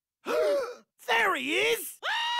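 Two wordless cartoon-character voice exclamations: a short falling groan about a quarter second in, then a longer one that dips in pitch and comes back up.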